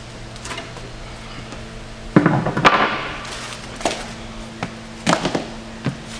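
Wooden balance-board deck and foam roller pieces being handled on a wooden platform: a scrape with two sharp knocks about two seconds in, then three lighter knocks spread over the rest.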